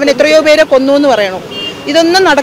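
A woman speaking in Malayalam, with a short vehicle horn toot in passing traffic about one and a half seconds in, in a pause between her words.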